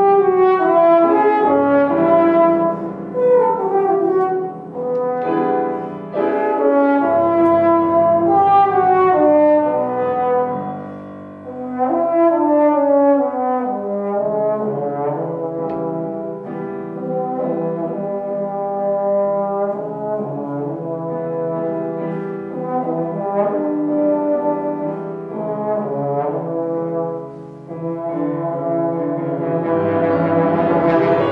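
Tenor trombone playing a melodic classical line with grand piano accompaniment, with brief dips between phrases about eleven seconds in and again near the end.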